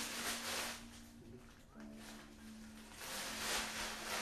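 Clear plastic packaging rustling and crinkling as shoes are handled and unwrapped, soft and dropping to a quiet lull in the middle before picking up again near the end.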